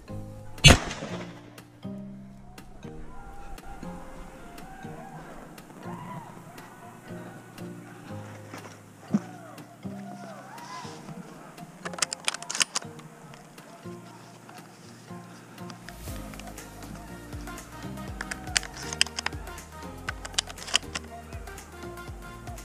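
Background music throughout, with one loud, sharp shotgun shot about a second in.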